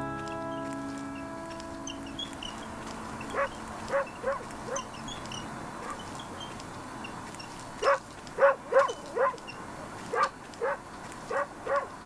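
A dog barking in short yaps: four about three seconds in, then a run of about eight from about eight seconds on. Soft music fades out at the start.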